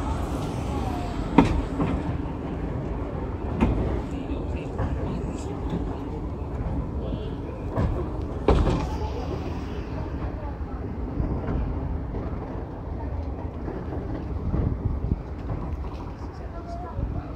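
Running noise of a train moving slowly on the track: a steady low rumble with a few sharp clanks, the loudest about a second and a half in and at about eight and a half seconds.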